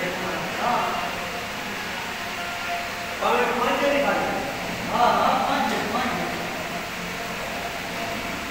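Men's voices talking and exclaiming in bursts over a steady background hum.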